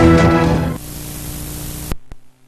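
TV news theme music that stops abruptly less than a second in, leaving a fainter hiss with a low steady hum, which cuts off just before the end.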